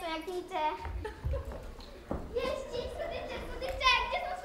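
High-pitched children's voices calling out, not clear words, with one long held call in the second half and a single knock about two seconds in.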